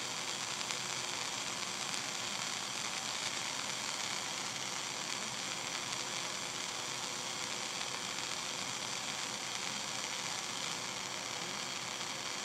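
Lit Bunsen burner flame giving a steady, even hiss.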